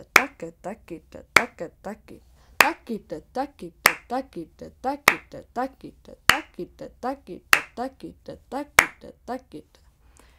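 Konnakol: a woman recites a rapid, even stream of spoken drum syllables dividing each beat into five, with a sharp hand clap marking each beat about every 1.25 s.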